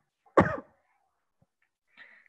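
A single short cough, loud and sudden.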